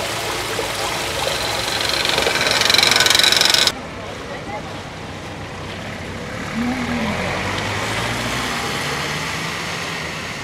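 Rainwater pouring through a street storm-drain grate, a rushing that grows louder for a few seconds and then cuts off abruptly. After it comes a quieter wash of shallow water running over a flooded street, with road traffic.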